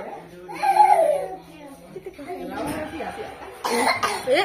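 Voices of people and a child, with no clear words. A short harsh burst near the end is probably a cough.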